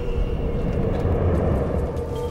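A low rumbling drone under a steady held tone, a tense soundtrack underscore that swells slightly and eases off again.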